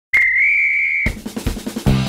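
A single whistle blast lasting about a second, then a quick drum fill with hits about five times a second, leading into rock music near the end.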